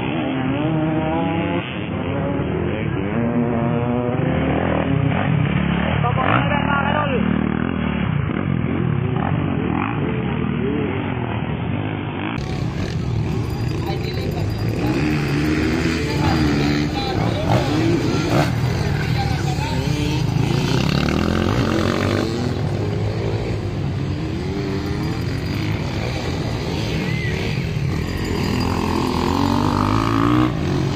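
Motocross dirt bike engines running and revving on the track, with people's voices talking and calling over them throughout.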